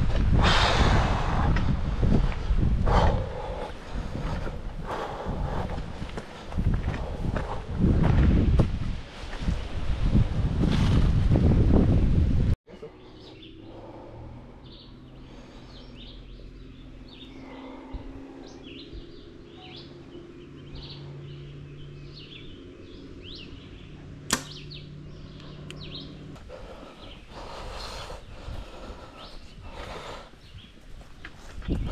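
Wind buffeting the microphone for the first dozen seconds. After a sudden cut come small birds chirping over a low steady hum, and about two-thirds of the way through a single sharp snap of a compound bow being shot.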